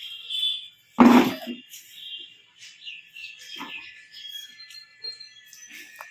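A hollow thump about a second in, with a short ring-out, from a toddler's plastic bucket knocking on a concrete floor, followed by a few smaller knocks. Faint, thin, high-pitched tones sound through it, one held steadily in the second half.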